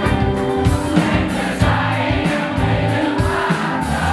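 Live rock band playing: a woman sings into a microphone over electric guitars and a drum kit, all amplified through the PA.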